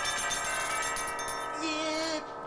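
Small handbell shaken rapidly, a steady bright ringing that thins out near the end.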